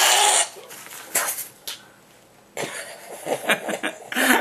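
Men laughing hard: a loud breathy burst at the start, then short cough-like bursts, a brief lull about halfway, and pulsing laughter again near the end.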